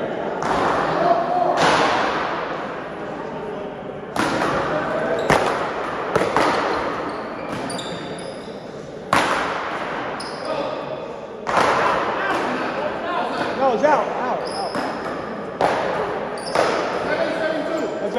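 Paddleball play: a rubber ball cracking off wooden paddles, the wall and the floor, with each hit echoing in a large hall. There are about a dozen hits, mostly a second or more apart, with a gap of a few seconds between points about two-thirds of the way in.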